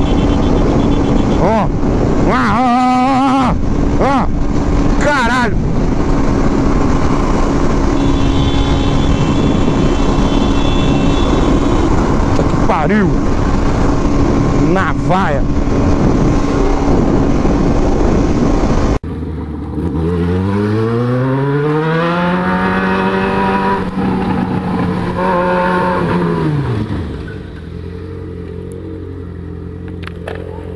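Yamaha motorcycle at steady highway speed: heavy wind rush over the helmet-camera microphone, with the engine holding one steady note and a few brief whooshes. About two-thirds of the way in, the sound cuts to another motorcycle engine that revs up in pitch, holds high for a few seconds, then drops back to a low idle near the end.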